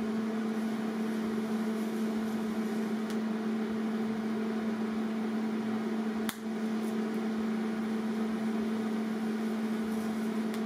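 MIG welding arc running with a steady buzzing hum, cut off for a moment about six seconds in and struck again.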